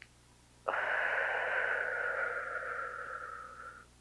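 A long, forceful breath out through the mouth, close on a clip-on microphone: it starts suddenly under a second in and fades away over about three seconds. It is the Pilates exhale that drives the lift of arms and leg.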